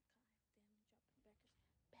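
Near silence, with a woman's voice speaking very faintly, almost whispered.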